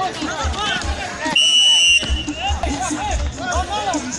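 Music with singing, and a short, shrill, steady whistle blast about a second and a half in.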